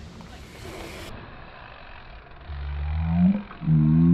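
A BMX bike rolling in fast on a packed-dirt trail, its tyres giving a low hum that rises in pitch for about a second from halfway through, breaks off, then returns briefly near the end as the bike reaches the jump.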